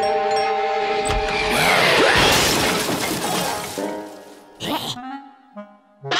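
Cartoon soundtrack: held music notes, then a loud crashing, shattering sound effect about a second and a half in that dies away over a couple of seconds. A short sharp burst comes near the end.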